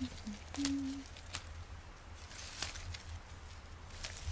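Hands picking low forest greens such as wood sorrel, with faint scattered snaps and rustles. A couple of brief low hums from a voice come in the first second.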